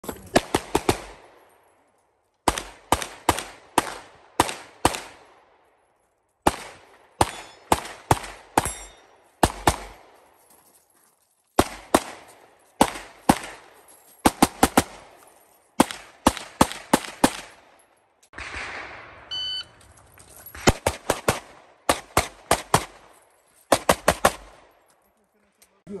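A Venom Custom 2011-style pistol fired at speed: rapid cracks in quick pairs and strings, with pauses of a second or two between strings as the shooter moves between positions.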